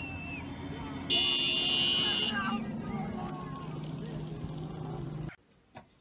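A car driving tipped up on two wheels, its engine and road noise running steadily under voices. About a second in, a loud high-pitched sound lasts about a second. Everything stops suddenly near the end, leaving a quiet room with faint knocks.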